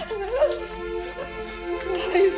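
Background music holding steady sustained tones, with a wavering voice-like sound rising and falling in pitch over it in the first second.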